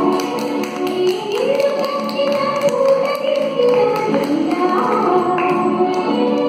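A group of women singing a song, with long held notes that rise and fall, over a steady tapping beat.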